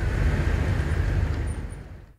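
Steady low rumbling outdoor noise with a hiss over it, fading out near the end.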